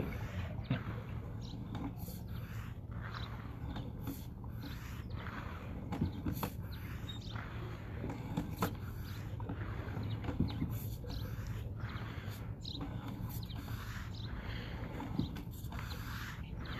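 A steady low hum with scattered, irregular light clicks and ticks as a sewer inspection camera's push cable is drawn back through the line onto its reel.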